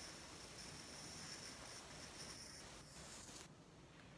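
USB-rechargeable electric arc lighter firing at a candle wick: a steady high-pitched buzzing hiss that cuts off about three and a half seconds in.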